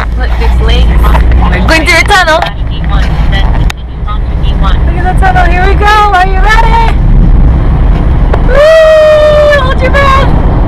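Voices talking inside a moving car over steady engine and road noise in the cabin. Near the end one voice holds a long call for about a second.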